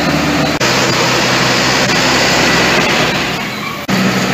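Tractor engine running steadily as it pulls a water tanker, with two brief breaks in the sound.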